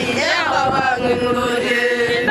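A group of Maasai women chanting together. Their voices slide down at the start, then hold long steady notes.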